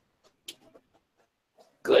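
Call audio dropping out to near silence, broken only by a few faint clicks, then a voice comes in loudly just before the end.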